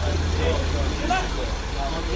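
Low, steady drone of a city bus engine idling at the stop, with people talking nearby.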